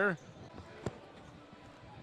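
Quiet arena background during a timeout, with a commentator's last word fading at the start and one sharp knock a little under a second in.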